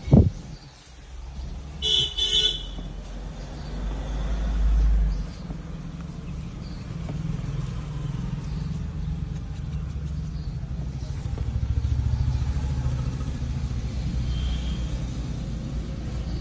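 Steady low rumble of a car's cabin on the move. A sharp thump at the start, and two short horn toots about two seconds in.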